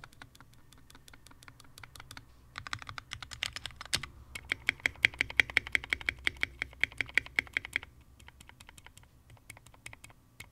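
Anne Pro 2 mechanical keyboard keys pressed over and over: a few spaced presses, then fast runs of repeated taps on the bottom-row keys, the longest run with a ringing note under the clicks. The stabilizers are untuned and give a small tick, which the owner points out on the shift keys and spacebar.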